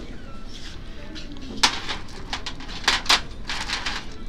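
A handful of sharp clicks and knocks from small decor items being picked up and knocked together on a shelf, the loudest about one and a half seconds in and two close together near three seconds.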